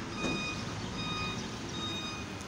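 A truck's reversing alarm beeping repeatedly, a high steady-pitched beep that sounds and stops in turn.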